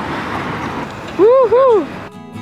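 Steady city street traffic noise. A little over a second in, a high voice calls out two drawn-out syllables, each rising then falling, louder than the traffic.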